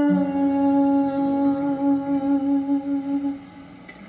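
A singer's voice holding one long wordless note, steady with a slight waver, over guitar, both run through a 1950s tube amp. The note stops about three and a half seconds in, leaving the guitar faint.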